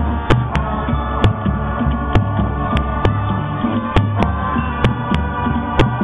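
High school band holding sustained chords over a deep, pulsing low end. Sharp clicks break in about every half second.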